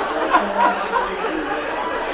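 Several voices talking over one another in indistinct chatter, with no single clear speaker.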